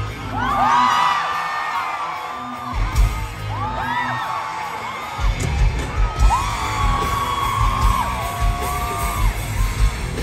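Live rock band playing through a PA: electric guitars, bass and drums, with high sliding tones over the top. The low drum-and-bass part drops back near the start and comes back in full about five seconds in.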